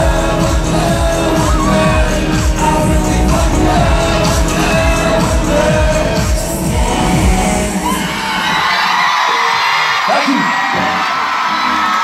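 A live pop dance track with a heavy, pounding beat plays loud through a stadium sound system, heard from among the audience. About two-thirds of the way through the music stops, and the crowd's screaming and cheering carry on.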